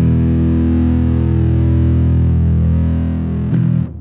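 Electric bass played through an MXR Bass Fuzz Deluxe (M84) fuzz pedal: a thick, fuzzed note rings out for about three and a half seconds. A short new note is struck near the end and quickly fades out.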